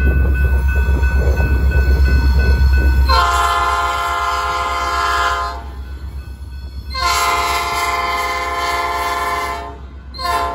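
Air horn of an EMD GP38-2 diesel locomotive sounding two long multi-note blasts, each two to three seconds with a pause between: the start of the long-long-short-long grade-crossing warning. Before the first blast, a loud low rumble from the approaching locomotives.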